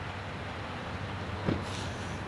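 Steady low hum with a light hiss of outdoor background noise, and one short faint knock about one and a half seconds in.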